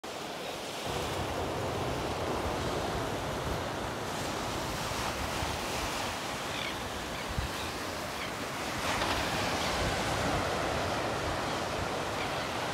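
Steady wash of surf and waves, with wind buffeting the microphone in a low, flickering rumble.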